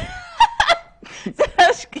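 People laughing in several short, choppy bursts.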